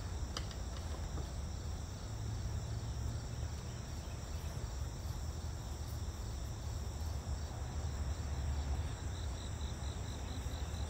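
Outdoor ambience of insects chirring steadily in a high register over a low rumble, with a faster pulsed chirp, about four a second, coming in near the end.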